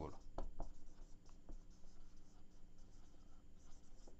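Whiteboard marker writing on a whiteboard: faint, scratchy strokes as letters are written out.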